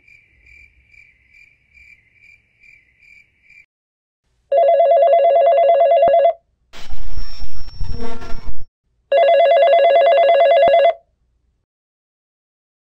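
Faint insect-like chirps pulsing about three times a second, then a telephone ringing twice, each ring nearly two seconds long, with a loud noisy clatter between the two rings.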